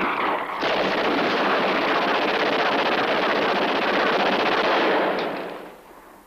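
Film soundtrack of a shootout: many guns firing at once in a dense, unbroken barrage of rapid shots, which dies away near the end.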